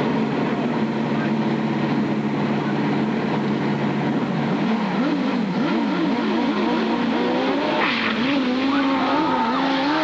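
Drag-racing motorcycle engines running at the start line, held steady at first, then revved up and down rapidly for a few seconds while staging. Near the end they are opened up hard as the bikes launch off the line.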